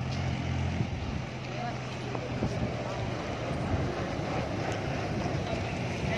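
Roadside outdoor ambience beside a highway: passing vehicle traffic, with a low steady engine hum that fades out about halfway through, wind on the microphone and indistinct voices.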